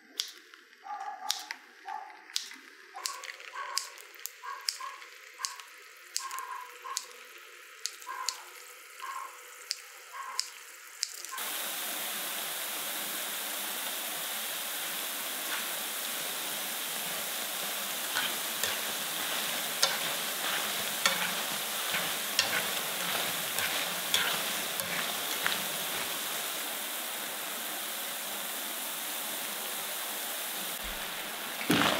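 Metal kitchen scissors snipping potato dough into hot oil, a sharp click roughly every three-quarters of a second with faint sizzles. About eleven seconds in it switches abruptly to the steady, loud sizzle of a full pan of potato-and-cornstarch dough sticks deep-frying, with crackling pops.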